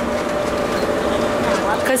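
Driverless airport people-mover train running, heard from inside the car: a steady rolling hum with a constant mid-pitched tone from its drive.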